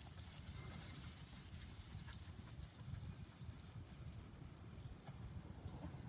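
Faint, irregular patter of a small flock of sheep's hooves trotting on sand, over a low steady rumble.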